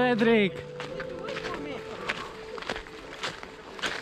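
A person's voice briefly in the first half second, then low, indistinct voices over outdoor background noise, with a couple of soft knocks near the end.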